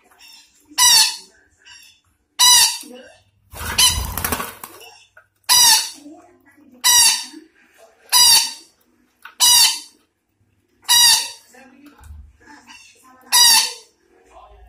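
Sumatran parakeet (betet) calling: about eight loud, harsh screeches, roughly one every second and a half, with softer chatter between. A longer, noisier burst with a low rumble comes about four seconds in.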